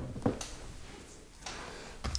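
Faint handling of a cardboard collector's box on a table: a few light taps in the first half second.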